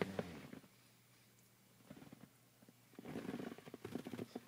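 Quiet car cabin, with faint rustling and small irregular clicks that grow busier in the last second.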